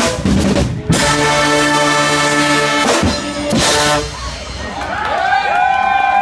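Guggenmusik carnival band of trumpets, trombones, euphoniums and drum kit finishing a piece. Cymbal crashes and drum hits lead into a loud, long-held brass chord, with more crashes about three seconds in. The band stops after about four seconds, and voices call out.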